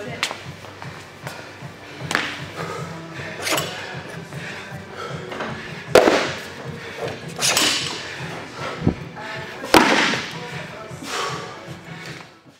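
Background music with a series of heavy thuds from a bumper-plate barbell on rubber gym flooring; the loudest come about six seconds in and again near ten seconds.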